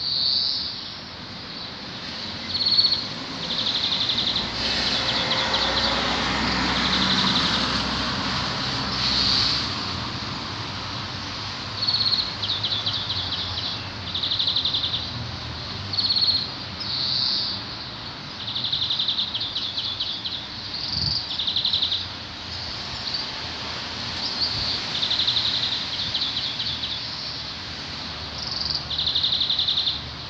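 Small birds singing outdoors: short, high trilled phrases repeated every second or two over a steady background hiss. A broader rushing sound swells and fades between about four and nine seconds in.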